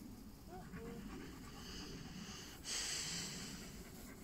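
A dog panting, with a louder hissing burst of noise lasting about a second near the end.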